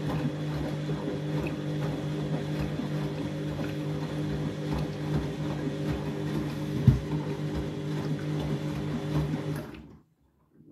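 Candy front-loading washing machine tumbling its drum through water during a rinse: a steady motor hum with water sloshing and irregular thuds, and one louder knock about seven seconds in. The sound cuts off suddenly just before the end.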